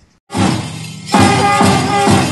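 A school marching band strikes up with a crash, then bugles sounding over drum beats about twice a second.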